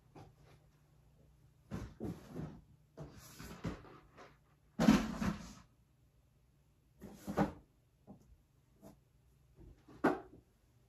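Rummaging in a small wooden nightstand: a string of short knocks and rattles as things are handled and shifted around in it, the loudest about five seconds in.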